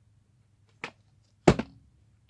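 Two short knocks, a small one and then a louder one about two-thirds of a second later: a VHS tape in its plastic case being handled and set down on the carpet.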